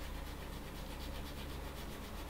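Toothbrush scrubbing isopropanol over the pins of a soldered QFP chip on a circuit board to clean it, a soft steady rubbing.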